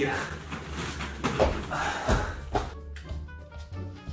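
Bedding rustling and quick thuds as someone scrambles off a bed and hurries across the floor. Background music with steady notes comes in about two-thirds of the way through.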